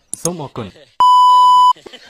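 A loud, steady censor-style beep, one tone held for under a second, cutting in abruptly about a second in over speech and stopping just as suddenly.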